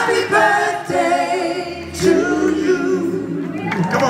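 Several voices singing together live in a hall, with the band behind them. There is a short dip in the singing about two seconds in.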